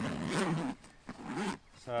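A zipper being pulled open along a soft carry bag, with a man laughing over it, then a short word near the end.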